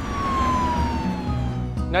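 Police car siren sounding one long wail that falls steadily in pitch and fades out near the end, over a music bed.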